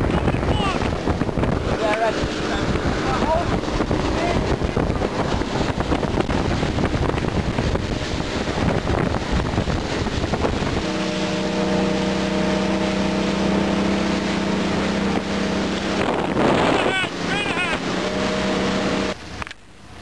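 A boat's engine running fast with wind and water rushing past. About halfway through, the rush falls away and the engine settles into a steady, even hum as the boat slows to creep in. The sound drops off suddenly shortly before the end.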